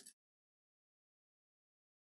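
Dead silence: the sound cuts off abruptly just as a spoken word ends, with no sound after it, as if the audio track was muted or cut.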